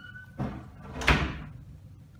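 A wooden door shutting: a brief squeak, a swish as it swings, then it closes with a thud about a second in.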